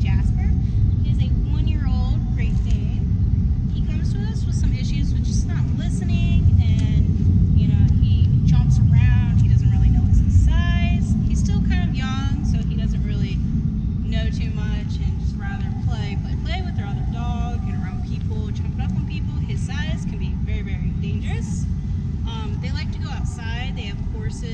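A person talking over a steady, loud low rumble.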